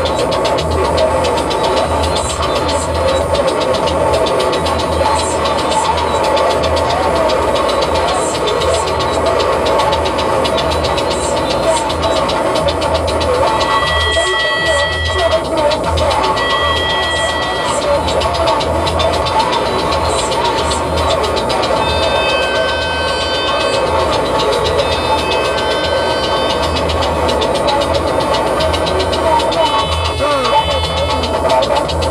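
Live electronic music from a laptop-and-controller setup: a pulsing bass under a dense, wavering mid-range texture, with pairs of high ticks about every three seconds. Steady synth tones come in about halfway through, and a cluster of higher tones follows later.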